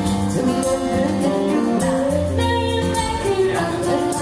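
Live amplified female vocal singing a slow Thai pop song, held notes changing pitch every second or so, over strummed acoustic guitar.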